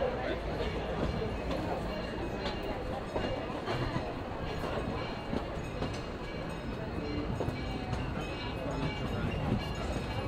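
Disneyland Railroad steam train running, heard from its passenger car: a steady rumble of the car on the rails with faint clicks.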